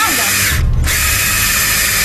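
Cordless drill running steadily as it bores a drain hole up through the bottom of a lacquered wooden coffin. About half a second in, the sound turns briefly deeper and duller before resuming.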